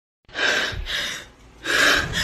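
A distressed woman's heavy, gasping breaths while crying: two long ragged breaths, the second starting about one and a half seconds in.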